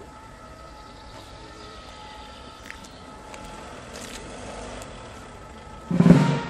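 Quiet outdoor background: a low steady rumble with a few faint steady tones and scattered faint ticks.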